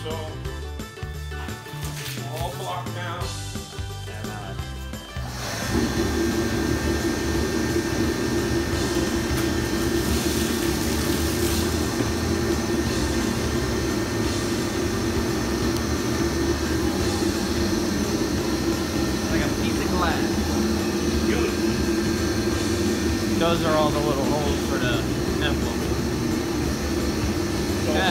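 Background music for the first five seconds, then a steady mechanical running noise starts suddenly, with a strong low hum, and carries on unchanged.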